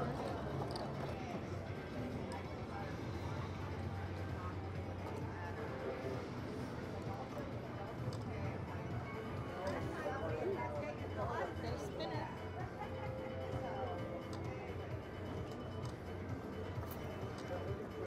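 Casino floor ambience: a steady murmur of distant voices and background music over a low hum, with a few faint clicks.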